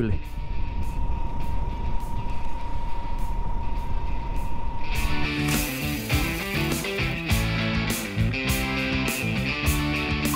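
TVS Sport 100's 100 cc single-cylinder four-stroke engine running at a steady cruise, under road and wind noise, with a thin steady whistle over it. About halfway through, background music with a beat and guitar comes in and covers it.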